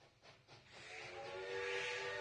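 Steam locomotive sound, played back: a few quick chuffs, then a hiss of steam and a steady, chord-like steam whistle that swell up from about a second in.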